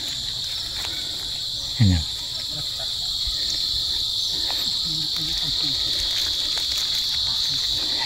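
Steady high-pitched insect chorus, an unbroken buzzing drone.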